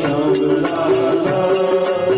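Devotional kirtan: voices singing a slow, held melody over small hand cymbals (kartals) struck in a steady beat, about four strikes a second.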